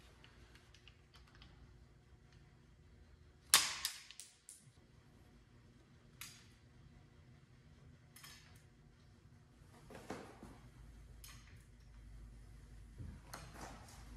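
Scattered sharp clicks and snaps from handling a caulking gun loaded with an adhesive tube, with one loud sharp snap about three and a half seconds in and softer clicks after it, over a low steady hum.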